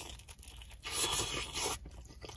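A bite torn from a pizza slice and chewed close to the microphone: a crunchy, tearing sound lasting about a second, starting a little before halfway in.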